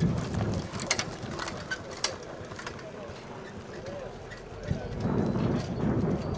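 A harness-racing trotter pulling a two-wheeled sulky passing close by on grass: dull hoofbeats, loudest at the start and fading as it goes away.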